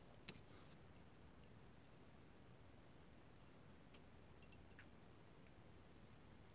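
Near silence, with one soft click about a third of a second in and a few faint ticks after it, from small metal airbrush parts being handled as a nozzle is threaded onto the airbrush.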